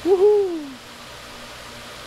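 A single short hoot, wavering briefly and then gliding down in pitch, less than a second long.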